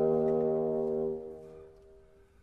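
A long held low note on a bassoon, fading out about a second and a half in.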